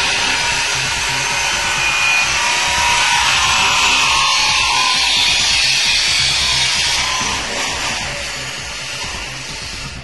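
Loud, harsh, steady machine noise, mostly a high hiss, under background music; it swells in just before and eases off toward the end.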